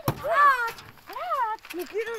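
A single sharp knock right at the start, then two loud, high-pitched vocal cries, a longer one and then a shorter one, each rising and then falling in pitch.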